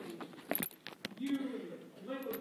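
A few sharp clicks and metallic clinks close to the microphone in the first second, then a voice speaking on stage, heard from a distance.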